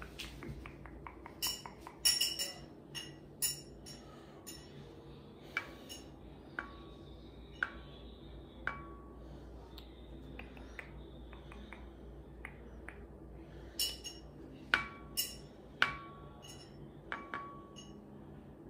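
Irregular light taps and clicks of small hard objects being handled and knocked together, starting with a quick run of taps. Several strikes leave a short ringing clink, like glass or shell.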